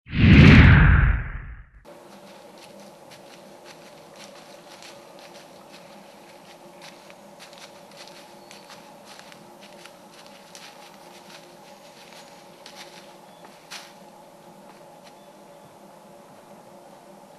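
A loud swoosh opens the video, lasting under two seconds. Then a faint steady hum, with scattered light crackles of dry leaves being stepped on.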